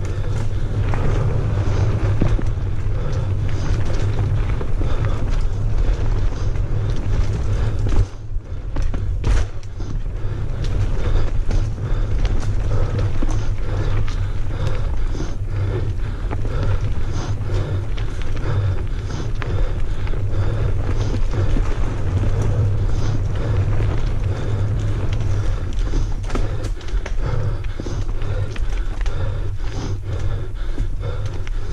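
Mountain bike rolling fast down a dirt singletrack: a steady low rumble of tyres and wind on the camera, with the bike's frame and parts rattling over the bumps. There is a brief lull about eight seconds in.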